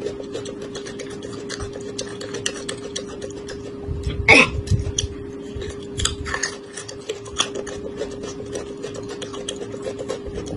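Close-miked chewing of white corn on the cob: a dense run of small wet clicks and crunches. About four seconds in there is a louder sound that slides down in pitch. A steady low hum runs underneath.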